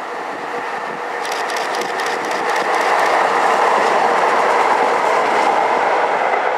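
Two coupled Tyne and Wear Metrocars pulling away and running past, growing louder to a peak from about three seconds in. A run of rapid wheel clicks over the rails is heard from about a second in until near the end.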